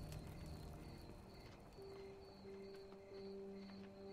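Faint night ambience: crickets chirping about twice a second and a campfire crackling, with soft held music notes coming in about two seconds in.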